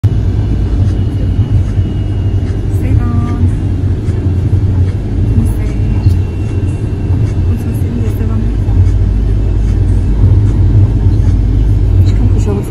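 Road and engine noise of a moving car heard from inside the cabin: a steady low rumble, with a faint high whine at times.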